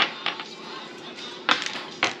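Domino tiles clicking against each other and on a wooden table as they are picked up and set down: a sharp click at the start, a few lighter ones, and a louder clack about one and a half seconds in.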